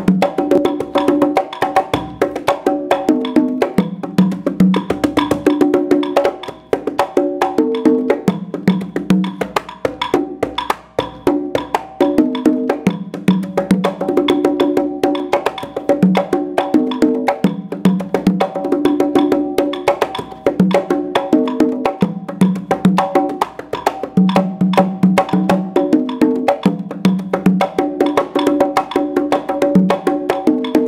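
Three conga drums played by one drummer in a continuous guarapachangueo rhythm, improvising freely within the pattern, with the low drum's deep open tones returning in short runs every couple of seconds. Sharp wooden clicks of a clave pattern keep time alongside.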